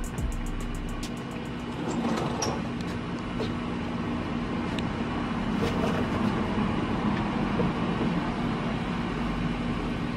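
A steady low mechanical hum with a constant drone over a noisy background.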